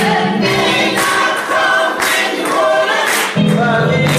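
Church choir singing, voices holding long sustained notes. The low notes drop out for about two seconds in the middle and come back near the end.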